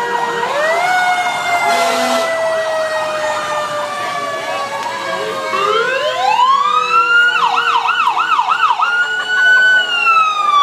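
Two emergency-vehicle sirens: a fire truck's wail slowly falling in pitch, then an ambulance siren winding up about six seconds in. The ambulance siren switches to a fast yelp of about four warbles a second, then holds a high steady note.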